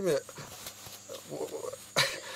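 A man's word trailing off, then a faint, indistinct low vocal sound over the hiss of a video call played through computer speakers.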